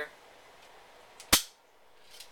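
A single sharp plastic click about a second and a half in, from handling an airsoft speed loader.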